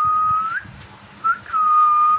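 A woman whistling through pursed lips: two long, steady notes at the same pitch. The first ends in an upward flick about half a second in; a short chirp comes just past a second in, then the second long note.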